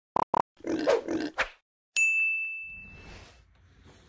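Intro sound effects: two quick beeps, then a grunting sound lasting about a second, then a sharp bell-like ding about halfway through that rings out and fades.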